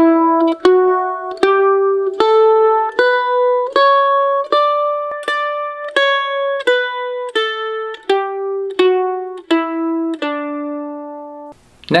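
Mandolin playing a one-octave D scale slowly, one down-stroke pick per note, about two-thirds of a second apart. It climbs from the low D to the D an octave above and comes back down, ending on a held low D that rings and stops shortly before the end.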